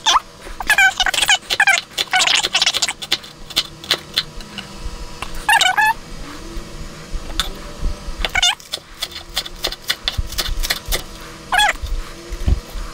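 Knife chopping on a wooden cutting board, with scattered clicks and knocks of utensils and glass jars, the chopping quickening in a dense run of sharp taps after about eight seconds. Several short, high-pitched calls that rise and fall come through it at intervals.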